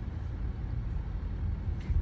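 Steady low rumble of a car heard from inside its cabin: engine and road noise with no other distinct events.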